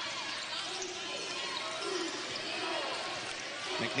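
Arena sound of a college basketball game in play: a steady crowd murmur with a basketball bouncing on the court.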